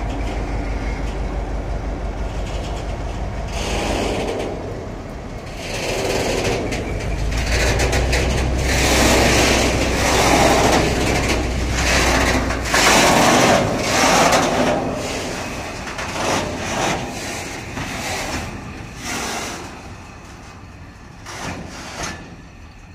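Diesel locomotive of the 661 series, an EMD-built two-stroke, running with a steady low engine note that grows stronger about seven seconds in and drops away about thirteen seconds in, as its train of tank wagons moves off. Loud irregular rumble and rattle of the rolling tank wagons, fading toward the end as the train draws away.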